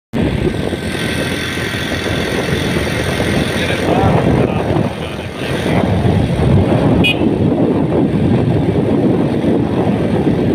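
Wind buffeting a phone microphone with the road and engine noise of a moving motorcycle, a steady loud rush with a brief dip near the middle.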